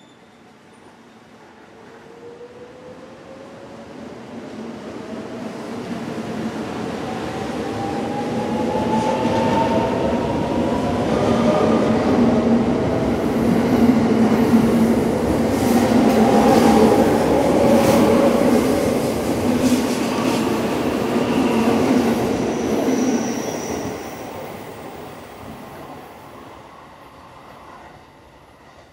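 A 681/683 series electric limited express train pulling out and accelerating past. The traction motor whine rises steadily in pitch as it gathers speed, and the rolling noise and wheel clacks over rail joints build to a peak as the cars pass close. The sound then fades as the train draws away.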